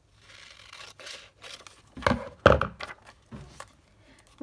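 Scissors cutting through an old paper envelope, with paper rustling and sliding. Two louder knocks come about two seconds in, as the envelope is laid against the journal page.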